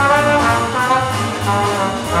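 Jazz big band playing live: the brass section, trombones and trumpets, holds sustained chords over a walking bass line, with piano and a drum kit keeping time on the cymbals.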